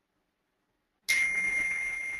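A single bell-like ding about a second in: a high ringing tone that starts suddenly and fades slowly.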